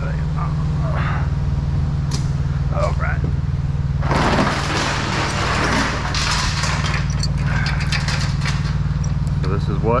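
A steady low engine hum runs throughout. About four seconds in, a loud rush of hissing noise lasts around three seconds. After it come scattered sharp metallic clinks as a steel load chain and grab hook are handled.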